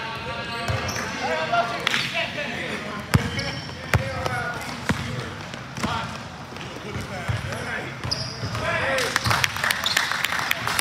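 A basketball being dribbled on a hardwood gym floor: several single bounces a little under a second apart in the middle stretch, with players' voices around them.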